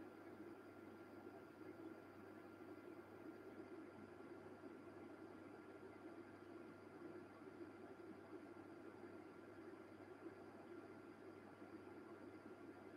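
Near silence: room tone, a faint steady hiss with a low hum and a thin high tone.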